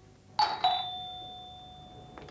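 Two-note ding-dong doorbell chime: a higher note about half a second in, then a lower note a quarter second later that rings on and fades slowly.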